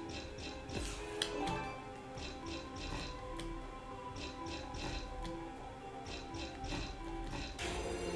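Online slot game audio from John Hunter and the Book of Tut Respin: background music with repeated short ticking as the reels spin, and a louder whooshing effect near the end as the book scatter symbols land.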